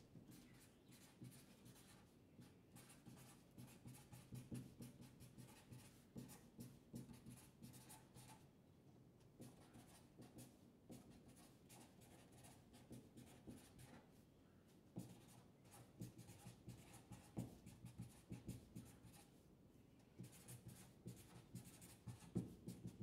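Faint sound of a black marker pen writing block capital letters in short, quick strokes, with a few brief pauses between words.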